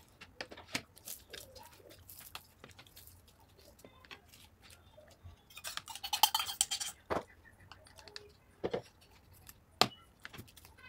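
Steel spoons clicking and scraping on plates as samosas are broken up, in scattered separate clinks. About six seconds in comes the loudest stretch, a quick flurry of ringing clinks as a small steel bowl is tipped and knocked against a plate.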